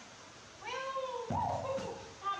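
Baby macaque calling: two drawn-out, high-pitched wavering calls, one right after the other.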